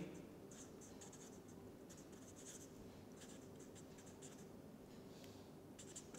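Faint felt-tip marker writing on paper: a run of short, high-pitched scratchy strokes as letters are written.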